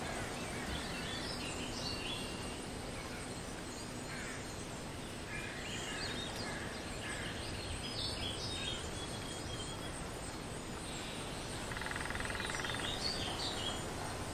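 Forest ambience: a steady bed of background noise with scattered bird chirps and calls. About twelve seconds in, a rapid buzzing trill lasts roughly a second.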